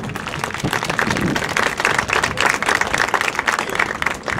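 Stadium audience applauding, the clapping building over the first second and then holding strong.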